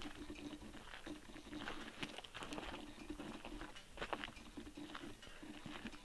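Faint, irregular crunching and ticking, like footsteps on a dry dirt and gravel surface, under a faint low hum.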